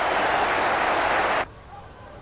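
Football stadium crowd cheering after a goal, a loud steady roar that cuts off abruptly about one and a half seconds in, leaving a quiet background.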